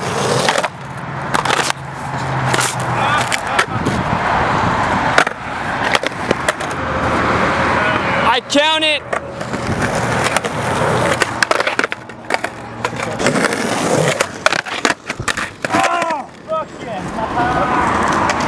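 Skateboard wheels rolling over a concrete sidewalk, with several sharp clacks of the board during tricks.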